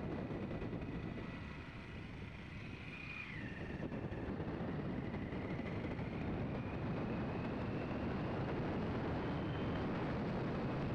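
Steady rumble and wind rush of a moving road vehicle heard from on board, with a faint high whine running through it that drops in pitch about three seconds in.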